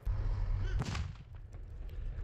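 An explosion close to a railway line: a sudden deep boom at the start, its low rumble carrying on for a couple of seconds.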